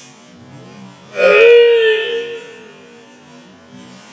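A man's loud kiai shout, one pitched cry about a second long starting a little over a second in and fading out, given with a diagonal (kesa giri) katana cut.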